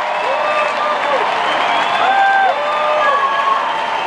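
Large arena crowd cheering and applauding, a steady wash of clapping with voices calling out in short held shouts over it.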